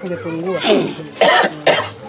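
A woman speaking briefly, then coughing twice in short, loud bursts a little over a second in.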